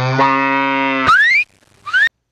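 A loud, low, moo-like vocal bellow held for about a second and a half, sliding up in pitch at the end, followed by a short rising "Woo!" shout.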